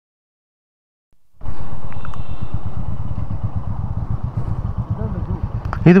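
Royal Enfield Meteor 350's single-cylinder engine running with a low, steady beat. It cuts in suddenly about a second and a half in, after silence.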